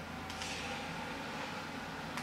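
Steady room tone with a low hum and a faint even hiss, and one faint click about a third of a second in.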